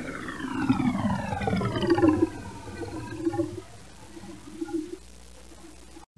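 Cartoon drinking sound effect as a glass of water is gulped down: a long falling pitched sound over the first few seconds, then a few short gulps that grow softer toward the end.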